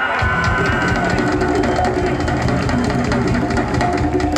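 Live band music: a held sung note fades out about a second in as bass and drums come in, with congas and other percussion clattering on top.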